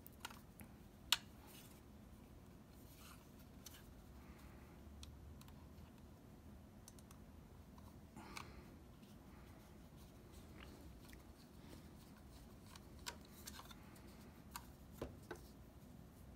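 Faint, sparse clicks and light metallic taps of a Phillips screwdriver and small screws against a laptop hard drive's metal mounting bracket, over near-silent room tone. A sharp click about a second in and a few more near the end.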